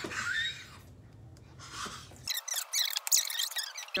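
A spatula scraping chocolate cake batter out of a glass mixing bowl, a run of short scrapes and clicks in the second half.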